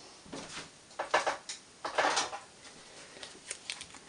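Paper and card stock being handled on a desk: a few short rustles and light taps, spaced about a second apart.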